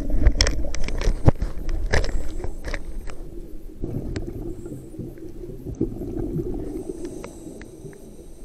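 Scuba regulator exhaust bubbles underwater, a gurgling crackle for about the first three seconds, then quieter noise that fades.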